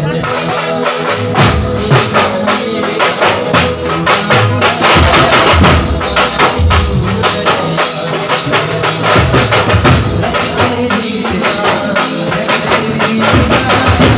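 Street procession band's drums playing a loud, fast rhythm, several strokes a second, with no singing over it.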